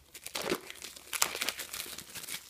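Clear plastic shrink wrap being peeled off a phone box and bunched up in the hand: irregular crinkling and rustling, the loudest crackle a little past a second in.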